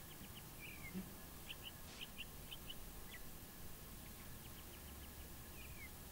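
Faint chirps of small birds: short high notes in scattered groups, with a couple of downward-sliding calls, over a faint steady hum. A soft low bump about a second in.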